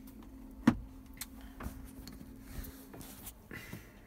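Steady low hum inside a tractor cab, with one sharp knock a little under a second in and a few lighter clicks and bumps as the camera is handled.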